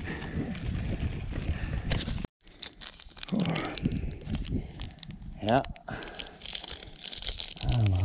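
Mountain bike rolling on a dirt fire road with wind on the microphone. After a sudden cut about two seconds in, a Honey Stinger waffle wrapper is torn open and crinkled by gloved hands.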